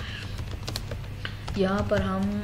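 Typing on a computer keyboard: a scattered run of key clicks for about a second and a half, then a woman's voice starts near the end.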